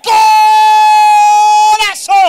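Football radio commentator's drawn-out goal shout: one long note held at a steady pitch for nearly two seconds, breaking off near the end.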